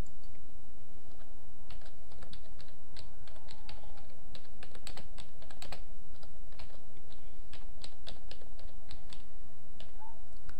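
Computer keyboard keystrokes typing a short phrase of text, an irregular run of about two dozen clicks that begins about two seconds in, over a steady low background hum.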